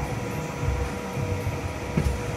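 Steady background hum with a low rumble that swells and fades a few times.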